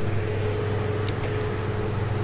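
Construction-site machinery engine running steadily: a low, even drone with a faint steady whine over it.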